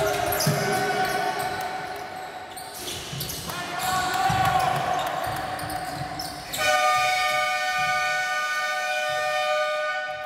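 Basketball play on a hardwood court, with the ball bouncing. About two-thirds of the way in, the arena's game-clock horn sounds one long steady blast of a little over three seconds: the buzzer marking the end of the second quarter.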